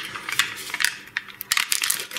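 Thin plastic quark tub being handled and opened: irregular crinkling and crackling of plastic with scattered sharp clicks and snaps.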